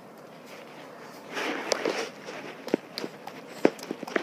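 A dog's claws clicking on a tiled floor: a few sharp, separate taps in the second half, after a short burst of noise less than halfway in.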